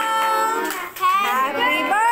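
A song in a child's high singing voice, with pitched notes gliding between syllables and a short break about a second in.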